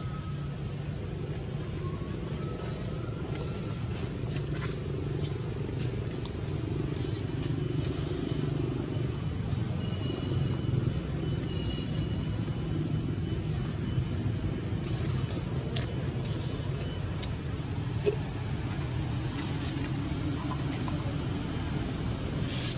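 A steady low background rumble with a few faint, short high whistles over it.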